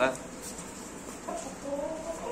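A rooster clucking: a few short, low clucks in the second half.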